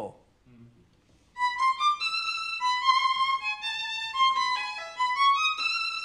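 A violin playing a slow melodic line of held notes high on the instrument, starting about a second and a half in.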